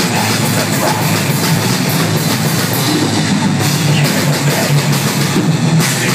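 Heavy metal band playing live: electric guitars and drum kit, loud and dense without a break.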